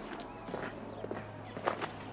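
Footsteps crunching on a gravel yard, a step about every half second.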